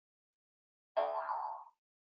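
A short electronic chime from the video-call software, starting about a second in and fading out in under a second.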